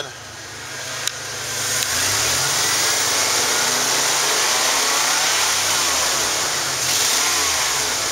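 A 1996 Ford Econoline van's 4.9-litre straight-six engine running, coming up in speed over the first second or so and then held steady at a raised speed, heard close at the engine compartment. The motor runs fine.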